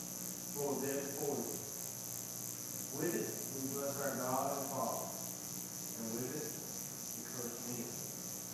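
A man reading a Bible passage aloud, his voice faint and distant, in phrases with short pauses. Behind it runs a steady high-pitched pulsing whine.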